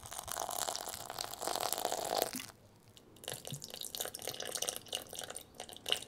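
Soy sauce poured in a thin stream from a plastic bottle onto dry rice koji in a glass bowl, a spattering trickle made of many small ticks. The pour stops about two and a half seconds in and starts again about a second later.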